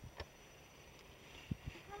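Faint outdoor background with one sharp click early on and two short low thumps past the middle, then a man's laugh starting right at the end.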